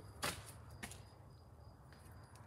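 A short sharp knock about a quarter second in and a fainter tick a little before the one-second mark, over a faint low hum.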